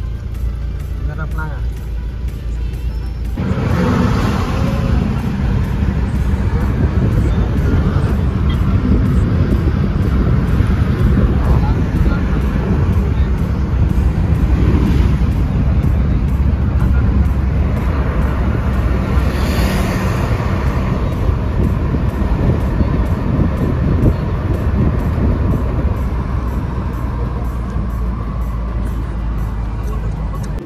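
Car driving, heard from inside the cabin: a steady low engine and road rumble that grows louder about three seconds in as the car picks up speed, with a few brief swells of passing traffic.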